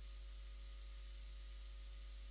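Quiet recording noise floor: a steady low hum with faint hiss, and no other sound.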